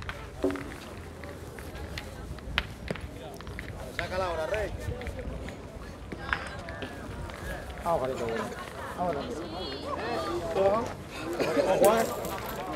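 Men talking and calling out, with a few sharp knocks between the talk; the clearest, about two and a half seconds in, is a thrown steel petanque boule landing on the gravel court.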